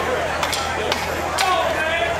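Four sharp, evenly spaced clicks about twice a second, a drummer's count-in on drumsticks just before the band starts the next song. Crowd chatter runs underneath.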